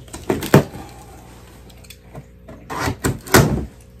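Cardboard shipping box being pulled open by hand: short, sharp rips and scrapes of cardboard and tape, in one cluster about half a second in and another around three seconds in.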